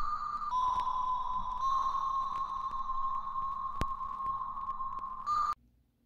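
Small Shurflo pump for spraying cleaning chemical, running with a steady high whine that shifts slightly in pitch twice in the first two seconds. One sharp click comes about two-thirds of the way through, and the whine cuts off suddenly shortly before the end.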